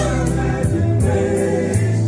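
Male vocal group singing together in harmony, backed by a live band with a low bass line and a steady beat of cymbal hits.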